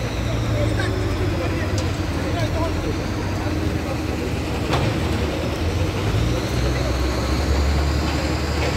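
Heavy diesel machinery running steadily with a low engine hum, and a high whine rising near the end. Voices of people talking underneath.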